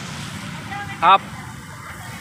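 Steady hum of city road traffic, with one short spoken word about a second in.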